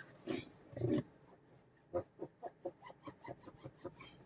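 Car interior plastic trim squeaking as it is rubbed by hand while being wiped with dressing. From about halfway through there is a quick run of short squeaks, about five a second. Two soft muffled sounds come in the first second.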